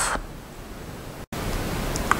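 Steady background hiss of room and microphone noise, with no speech. A little past the middle the sound drops out completely for an instant, and the hiss comes back slightly louder after it, as at an edit join.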